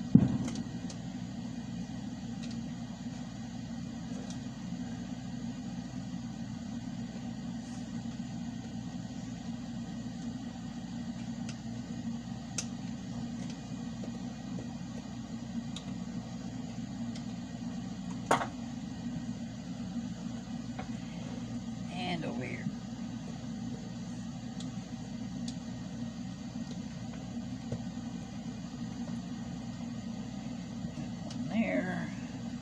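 Nickel tabs on a pack of LG MH1 18650 lithium cells being pushed down and bent flat by hand, with a sharp click at the very start and another about 18 seconds in, and a few fainter ticks over a steady low hum.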